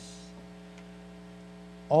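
Steady electrical mains hum from the sound system, a low tone with several overtones, heard through a pause in speech; a man's voice comes back right at the end.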